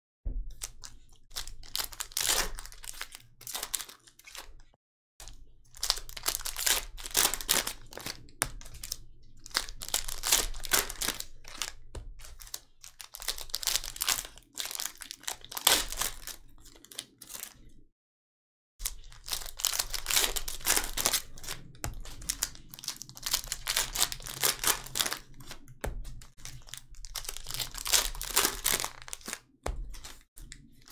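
Metallic foil trading-card pack wrappers crinkling and tearing as they are opened by hand, in irregular bursts with two brief gaps.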